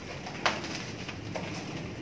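Birds calling, with a sharp click about half a second in and a fainter click about a second later.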